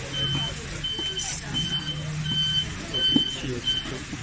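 An electronic warning beeper on a truck sounds a steady high beep over and over, about six beeps, one every 0.7 seconds or so, over a low steady hum.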